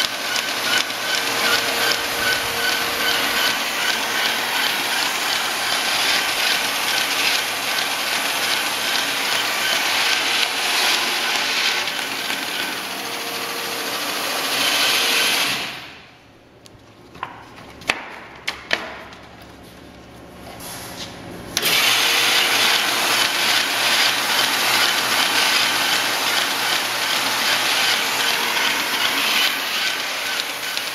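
Faltex 712-236 paper folding machine running with a loud, steady mechanical whir. About halfway it drops off to a quiet hum with a few sharp clicks for some six seconds, then the running sound comes back abruptly.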